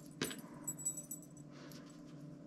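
Faint clinks of metal collar hardware (square ring, D-ring and buckle adapter) with rustling paracord as the cord is pulled tight into a cow's hitch: one sharp click about a quarter second in, then a few softer ticks.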